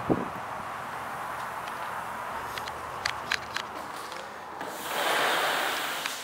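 Outdoor ambience with wind on the microphone, a steady rush. A low thump comes right at the start, a few light clicks come in the middle, and a louder gust of noise swells near the end and then fades.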